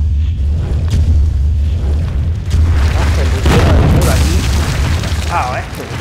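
Sound effect of a stone wall cracking and collapsing: a sudden, heavy deep rumble with sharp cracks and crumbling rubble over it, the rumble dying away after about four and a half seconds. A short wavering vocal sound comes near the end.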